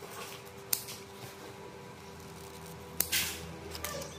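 Scissors snipping a broad dracaena (phát tài) leaf to trim it to a point: a few sharp snips, the loudest about three seconds in, followed by a brief rustle of the leaf.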